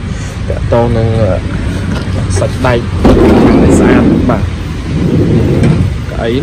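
A man speaking in short snatches over a steady low rumble, with a loud rumbling rush lasting about a second and a half midway.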